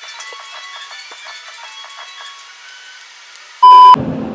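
Thin background music of plucked notes with no bass, then near the end a short, very loud steady beep tone lasting about a third of a second, an edited-in bleep.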